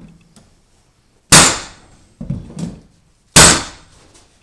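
Pneumatic flooring nailer struck with a mallet, firing twice about two seconds apart, driving fasteners through a white oak floorboard. Each firing is a loud, sharp bang that fades off; between them come two softer knocks as the nailer is set on the board again.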